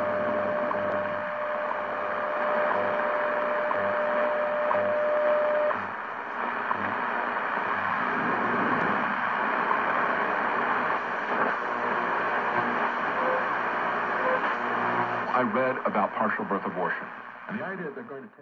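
Hammarlund HQ-100A tube communications receiver hissing with static as it is tuned across the band. A steady whistle sounds for the first six seconds or so, then cuts off, and a faint voice from a station comes up through the noise near the end before the sound fades out.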